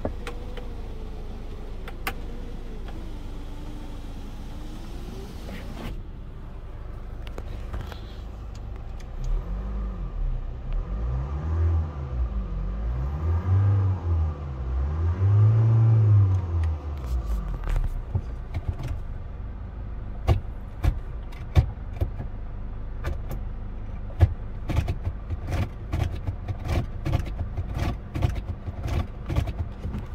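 An electric sunroof motor runs with a wavering whine for about six seconds and stops. Then the Hyundai Tucson's engine is revved three times in park, each rev rising to about 3,000 rpm and falling back, and it settles to idle with a run of sharp clicks over the last ten seconds.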